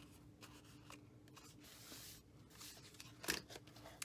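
Faint snips of scissors cutting glimmer paper and paper being handled, with a louder short noise about three seconds in. A low steady hum runs underneath.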